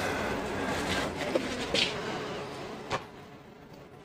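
Rustling of leafy cannabis branches and grow-tent fabric as the whole plants are handled and hung, with a few light knocks, fading out near the end.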